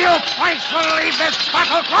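Voices shouting in a staged radio-drama battle: a string of short cries and yells, one after another, over a steady din of background noise.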